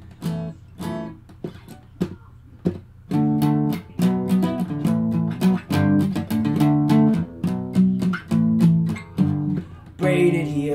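Acoustic guitar strummed without singing: a few sparse, softer chords at first, then steady rhythmic strumming grows louder about three seconds in.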